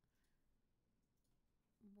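Near silence: room tone, with a woman's voice starting just before the end.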